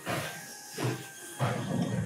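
Steam locomotive 1225, a 2-8-4, chuffing with hissing steam: three heavy exhaust beats, roughly one every 0.7 s. It is heard from a video played back over room speakers in a lecture hall.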